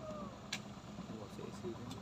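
A burning car giving off a sharp pop about half a second in, then fainter pops, over a steady low hum of engines idling on the road; the crackling pops are taken as the car starting to explode.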